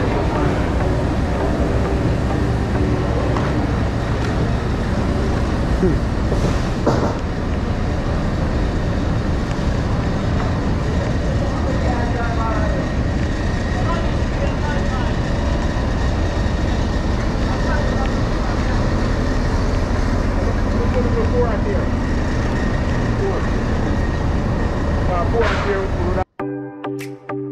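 A large engine running steadily, a continuous low rumble, with indistinct voices under it.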